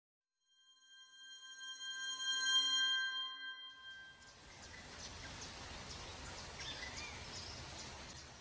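Logo ident sound: a sustained bell-like chord of several steady tones swells up, peaks and fades away over about three seconds. It gives way to a steady hiss of outdoor ambience with faint, scattered bird chirps.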